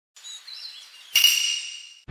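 Faint birds chirping, then about a second in a single sharp strike that rings on in a clear high tone and fades away.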